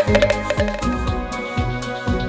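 Background music with a steady percussive beat over sustained tones.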